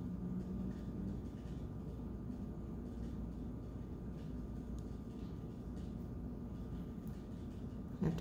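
Steady low room hum, with faint scratchy rustles of a pipe cleaner being twisted and wrapped by hand.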